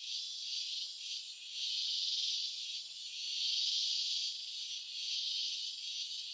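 Cicada chorus: a steady high buzz that swells and fades about every second and a half.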